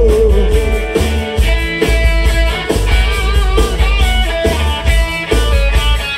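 Live rock band playing loud, with no vocals: electric guitar and bass guitar over a drum kit keeping a steady beat.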